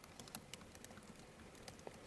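Faint computer keyboard typing: a run of soft, irregular key clicks.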